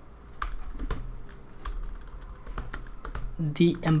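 Keystrokes on a computer keyboard: separate sharp clicks at an uneven pace as a line of code is typed.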